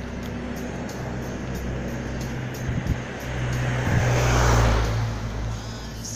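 Street traffic with a low steady hum, and a car passing close by: its tyre and engine noise swells to a peak about four and a half seconds in, then fades.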